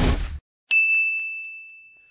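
Intro logo sound effect: a rising whoosh cuts off abruptly just after the start, then a single high, bell-like ding rings out and slowly fades away.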